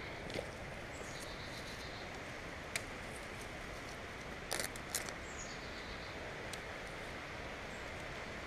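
Steady hiss of creek water and light rain, with a few brief clicks and rustles of leaves brushing against the camera, about three seconds in and again near five and six and a half seconds. Faint high chirps come twice, early and past the middle.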